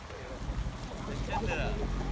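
Wind rumbling on the microphone, with faint voices in the background about halfway through.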